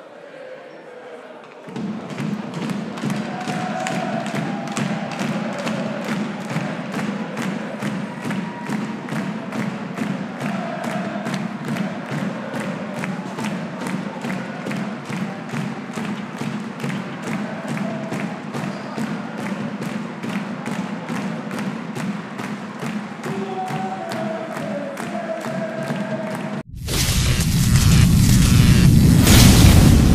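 Arena celebration music with a steady thumping beat, about two beats a second, with crowd voices chanting over it. Near the end it cuts to a sudden, loud booming sound effect.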